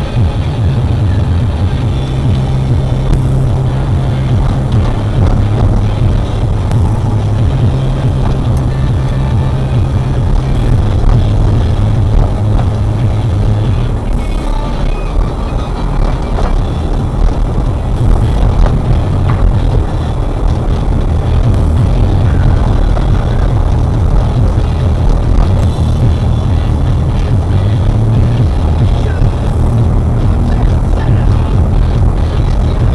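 Music with a heavy, shifting bass line playing from the car's stereo, heard inside the cabin over steady engine and road noise from the moving car.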